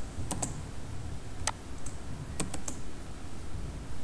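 Computer keyboard being typed on: scattered single keystrokes at an uneven pace, about eight in all.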